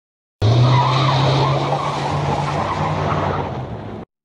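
Tyre-squeal sound effect: a sudden screech over a steady engine drone, starting about half a second in and cutting off abruptly at the end.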